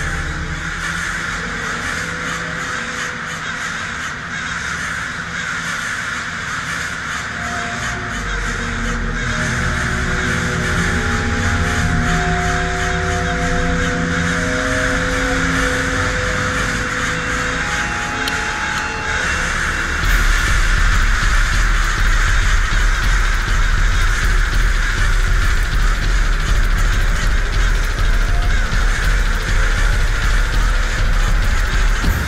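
A flock of crows cawing continuously, layered over dark film score music with held tones. About two-thirds of the way through, a deep low rumble comes in and the whole gets louder.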